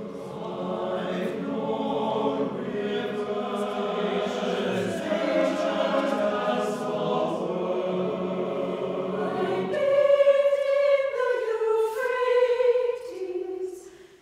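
Mixed choir singing in several parts at once. About ten seconds in, the lower voices drop out and higher voices sing on alone, louder, stepping from note to note, with a short break near the end.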